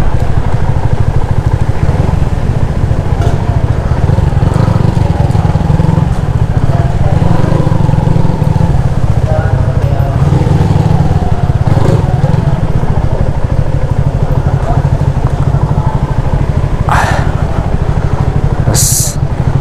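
Motorcycle engine on an open, unmuffled exhaust pipe running at low speed, a loud steady low rumble.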